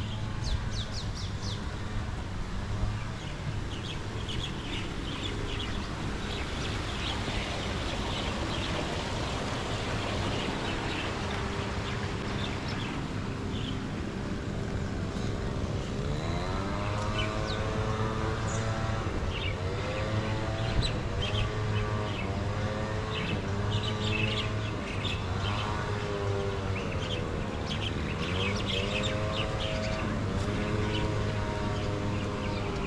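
Small birds chirping and calling around tropical gardens, over a steady low hum. About halfway through, a pitched sound joins in repeated rising-and-falling phrases about a second long.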